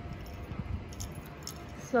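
Low gym room noise with a few faint light clinks spread through the middle, like small metal items jangling.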